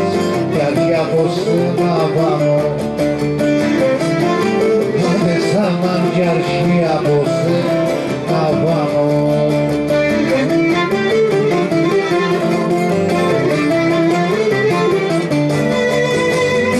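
Cretan folk music played live: a bowed string melody wavering over plucked string accompaniment, running steadily.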